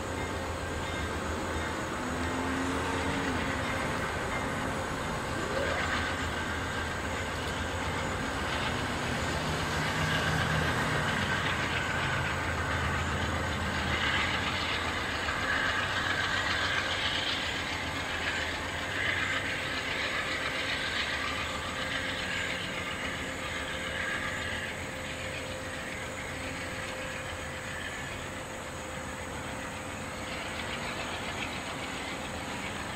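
CT Rail Hartford Line push-pull commuter train pulling out and rolling away, its diesel locomotive working at the far end and the wheels running on the rails. A higher wheel squeal rises in the middle, and the sound eases off near the end as the train recedes.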